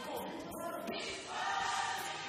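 Gospel choir singing behind a male lead singer, the voices swelling into a loud held chord in the second half.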